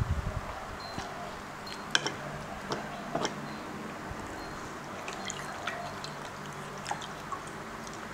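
Close-miked eating sounds: scattered small wet clicks and smacks as sticky rice is taken by hand and chewed, the sharpest click about two seconds in.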